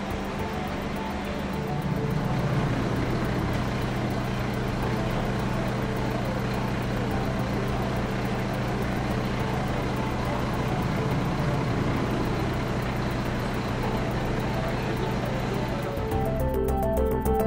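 Steady low drone of a running diesel engine, most likely the fire service's aerial platform truck running to power the platform. The drone gets louder about two seconds in.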